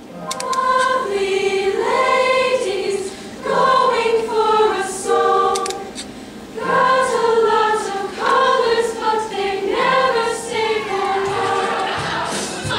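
The large ensemble cast of a stage musical singing in chorus, long held notes in phrases, with a short break about six seconds in.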